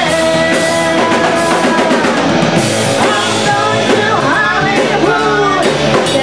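Live rock band playing: electric guitars and a drum kit, with a singer's voice gliding over the top, most clearly in the second half.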